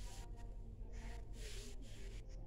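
A woman breathing hard from exercise: loud, hissing breaths, one at the start and another pair about a second in, over a steady low hum.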